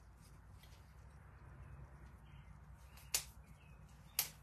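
Faint rubbing and small ticks of gloved fingertips smoothing epoxy over a metal tray, with one sharp click about three seconds in.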